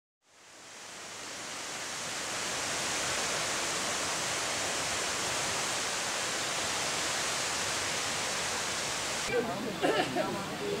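A steady, even rushing noise fades in over about the first two seconds and holds level. It cuts off abruptly shortly before the end, where a voice begins.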